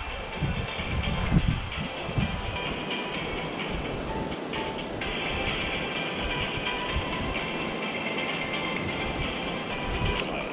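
Background music, steady throughout.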